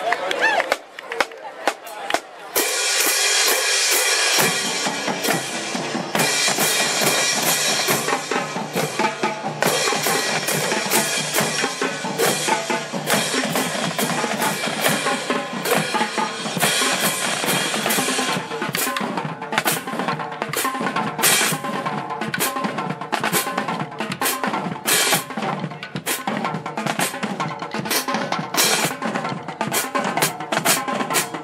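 Marching drumline of snare drums, tenor drums, bass drums and hand cymbals playing a cadence. A few separate strokes open it, the full line comes in about two and a half seconds in with cymbal crashes, and the bass drums join a couple of seconds later.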